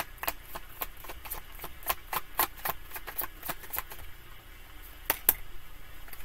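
A deck of tarot cards being shuffled by hand: a run of quick, irregular card clicks and snaps, several a second, with two sharper snaps about five seconds in.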